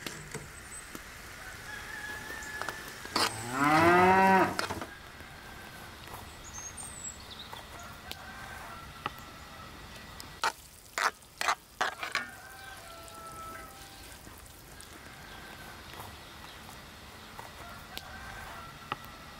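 A cow moos once, a single call of about a second and a half that rises and then falls in pitch, about three seconds in. Several sharp knocks come around eleven to twelve seconds in, with faint bird calls behind.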